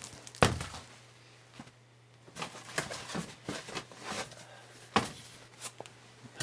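Cardboard box sets being handled on a wooden tabletop: a knock about half a second in, scattered light taps and rustles, and another knock about five seconds in.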